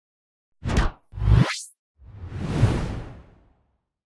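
Intro logo sound effects: two quick whooshes, the second rising in pitch, then a longer whoosh that swells and fades away.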